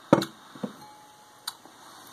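A sharp knock just after the start, then a softer knock and a light click about a second and a half in.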